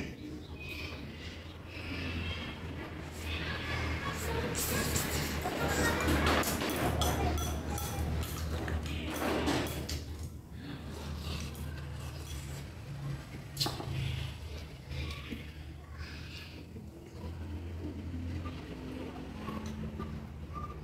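Close-up eating sounds: chewing and slurping soup from a bowl, loudest through the middle, with a sharp clink of tableware about two-thirds of the way in, over a steady low hum.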